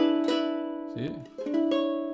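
Ukulele playing the blues ornament on an E7 chord: a chord plucked and left ringing, then about a second and a half later a second chord with a changed note, also left ringing.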